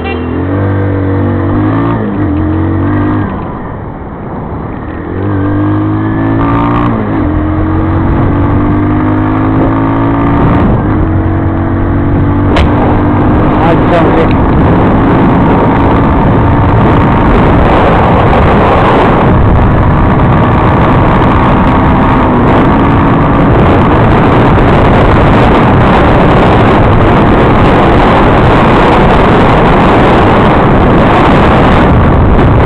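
Motorcycle engine running on the highway and accelerating, with the engine note dropping about four seconds in and then climbing again in a few rising sweeps. A rushing wind noise on the microphone builds with speed and covers the engine in the second half.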